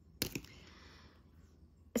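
Two quick light clicks of a thin plastic diamond painting pen being set down, followed by a faint brief rustle.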